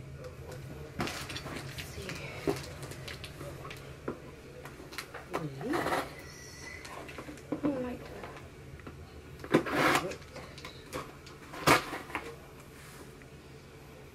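A delivered package being opened by hand: irregular rustles, rips and knocks of cardboard and packaging, with two louder tearing sounds in the second half.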